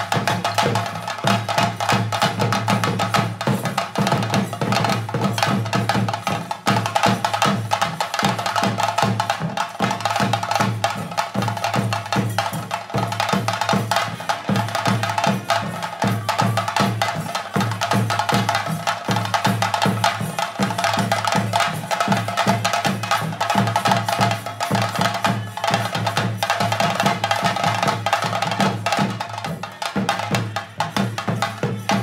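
Theyyam chenda drumming: several cylindrical drums beaten fast and continuously in a dense, driving rhythm, with a steady ringing tone held above the beats.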